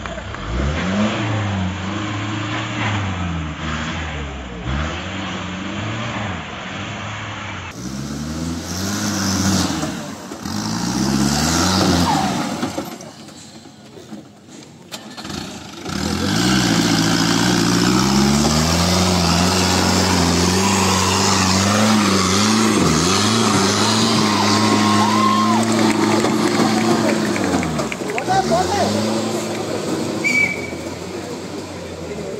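Off-road Mahindra jeep engines revving hard under load as they churn through deep mud. The revs climb and fall back again and again, every second or two.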